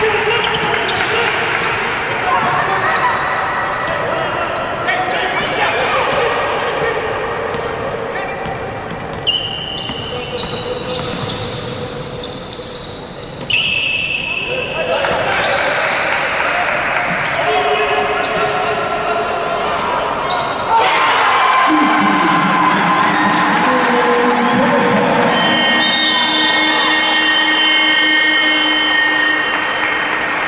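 Basketball bouncing on a hardwood court in a large, echoing arena, with players' and bench voices calling out. About two-thirds through, the sound turns louder and steadier as arena music with held notes comes in.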